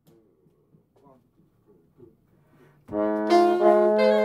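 A jazz band comes in all together about three seconds in, alto saxophone and trombone playing sustained notes in harmony over the rhythm section. Before that there are only a few faint scattered sounds.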